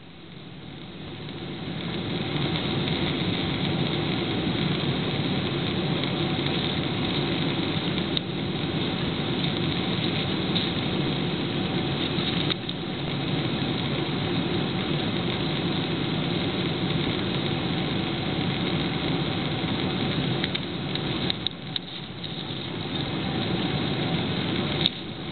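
Jet airliner cabin noise on final approach, heard at a window seat over the wing: a steady rush of engines and airflow that swells over the first couple of seconds, with a few knocks and clicks near the end.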